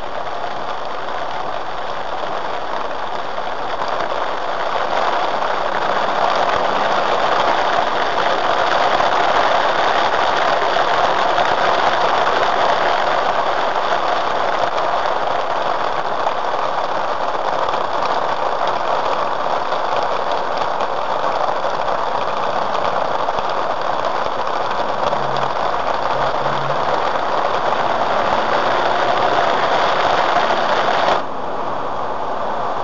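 Steady rush of heavy rain on a Jeep Wrangler and spray from its tyres on the wet road, heard inside the cabin while driving, with the engine running underneath. It grows a little louder about five seconds in and then holds.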